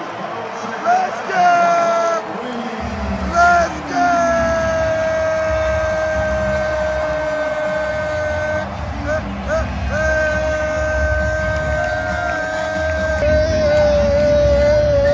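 A man's celebratory yells: a few short high cries, then two long drawn-out held yells of several seconds each, over the steady noise of an arena crowd.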